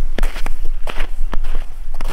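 Footsteps outdoors, a few irregular steps about half a second apart, over a steady low rumble on the microphone.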